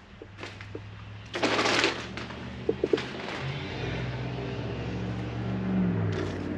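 Road traffic: a vehicle's engine hum builds and rises in pitch through the second half as it passes. A loud short rush of noise comes about a second and a half in, and a few short low notes sound just before the middle.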